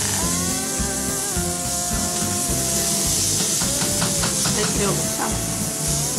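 Pressure cooker venting steam: a steady hiss with a held whistling tone that wavers slightly.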